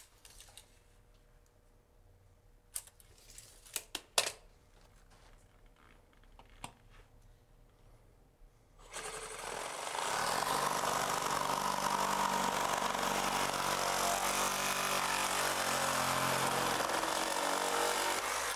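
A few faint knocks, then about nine seconds in a reciprocating saw starts and runs steadily, cutting through a length of 3-inch schedule 40 PVC drainpipe.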